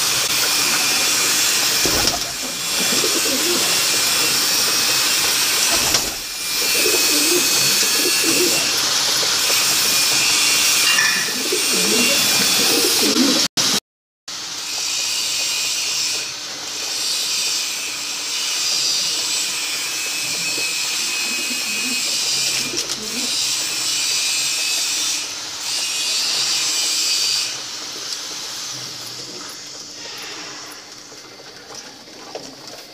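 A flock of domestic pigeons cooing over and over over a steady hiss, with a brief break in the sound about halfway through.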